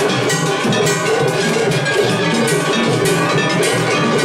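Japanese festival hayashi from several floats at once in a tataki-ai drum clash: taiko drums and clanging hand gongs (kane) struck fast and continuously in a dense, loud wall of percussion with metallic ringing.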